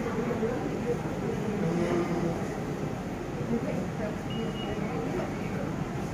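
Indistinct murmur of people's voices over a steady background hum in a hall, with a brief high tone about four and a half seconds in.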